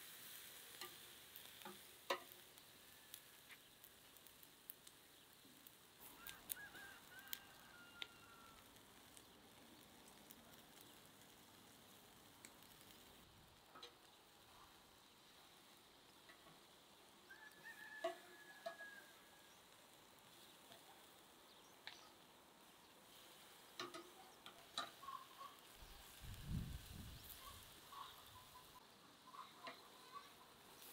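Faint sizzle of thin beef steaks cooking on a charcoal grill grate, with scattered sharp clicks of metal tongs against the grate.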